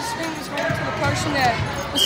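A boy speaking, with other children's voices and a few faint knocks in the background.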